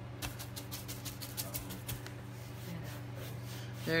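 Chip brush dry-brushing paint onto a wooden board: a quick run of short brush strokes, about five a second, over the first two seconds, over a steady low hum.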